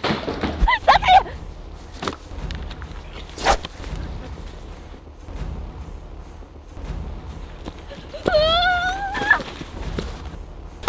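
A girl's long, wavering scream, rising in pitch, near the end, after a short cry about a second in and a brief sharp knock in the middle, over a low steady background.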